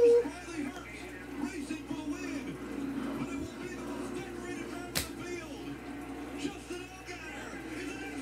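A television race broadcast playing in the room: a commentator's voice, faint, over a steady drone. One sharp knock comes about five seconds in.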